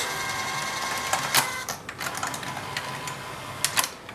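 Sanyo VTC5000 Betamax VCR's tape transport mechanism running with its cover off: a motor whir with steady thin whining tones that shift a little past the middle, and several sharp mechanical clicks near the middle and near the end. It runs on a new drive belt and idler tyre.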